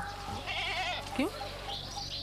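A goat bleating, one wavering, quavering call about half a second in.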